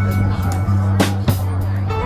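Live rock band playing: electric bass holding low notes, a drum kit with scattered cymbal and drum hits, and plucked strings.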